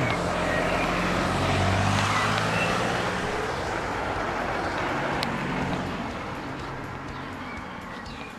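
A car driving past along the street, engine and tyre noise loudest about two seconds in, then fading away.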